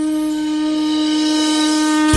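One long, steady blown-horn note held at a single pitch.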